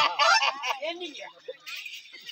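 A person's loud, nasal, wavering voice in the first half second, fading into quieter, broken voices.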